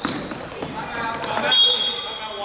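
Basketball game sounds in a gym: sneakers squeaking on the hardwood court and a basketball bouncing, with a longer high squeak about one and a half seconds in.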